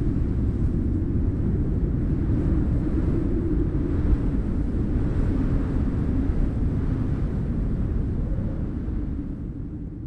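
A low, steady rumble with its weight in the deep bass, fading out over the last two seconds.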